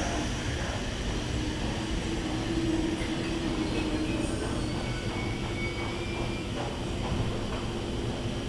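Train at a station platform: a steady low rumble with a constant hum, and a faint, brief high-pitched squeal a little past the middle.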